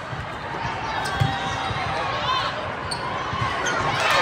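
Indoor volleyball being played in a large hall: ball contacts and a sneaker squeak over a steady chatter of players' and spectators' voices, with a low thump about a second in.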